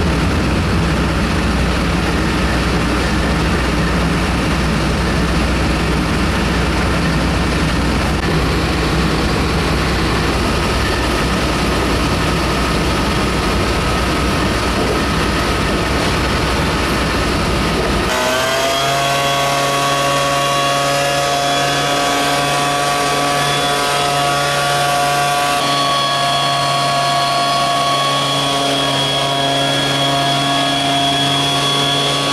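Motorised disinfectant sprayer running steadily at a loud, even level. About eighteen seconds in, the sound changes abruptly from a dense rushing hum to a steady, clearly pitched small-engine drone.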